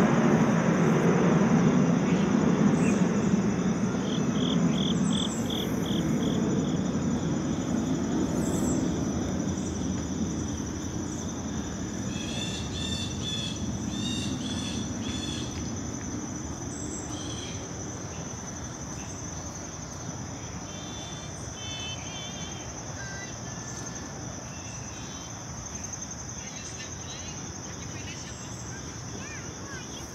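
Airplane passing overhead, its low rumble fading slowly over the first half, against a steady high-pitched insect trill. Short bird chirps come now and then.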